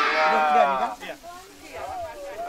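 A crowd of young children answering together in a long, drawn-out chorus of "iya" ("yes"), which dies away about a second in.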